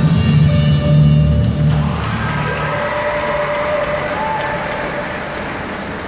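Figure skating program music over the rink's loudspeakers, ending about a second and a half in, followed by spectators applauding with some voices.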